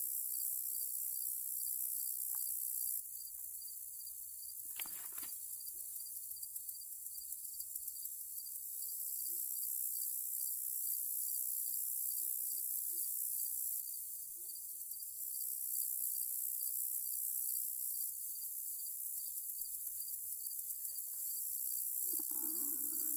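Steady high-pitched chorus of field insects, with one brief noise about five seconds in and a few faint handling sounds.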